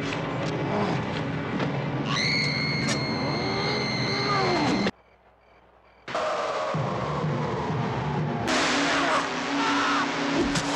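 Horror-film soundtrack cut together in pieces: music with a high held tone and sliding pitches, broken by a sudden drop to near silence for about a second around the middle, then falling pitches and a low steady tone.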